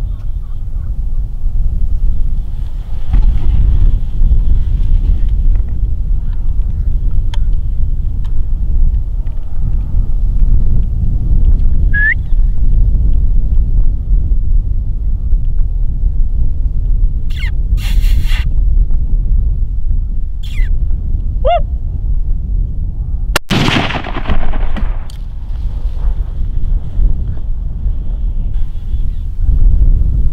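A single .270 rifle shot about three-quarters of the way through, the loudest sound, with a short echoing tail, over a steady low wind rumble on the microphone.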